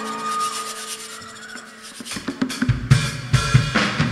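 A live band's sustained chord fades away. About two seconds in, the drum kit comes in with a run of kick, snare and cymbal hits as the band starts the song.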